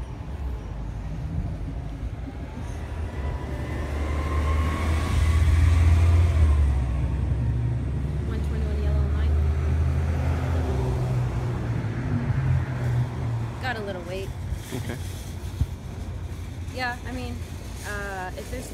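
City bus pulling away from the stop: a deep engine rumble that swells for a few seconds with a rising whine, peaks, then fades away about eleven seconds in.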